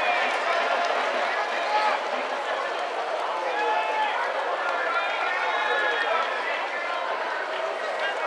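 Ballpark crowd: a steady babble of many overlapping spectators' voices calling and talking, with no single voice standing out.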